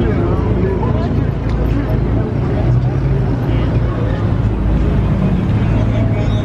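A lowered BMW M4's engine running at low revs with a steady low rumble as it rolls slowly past at walking pace, with crowd chatter behind it.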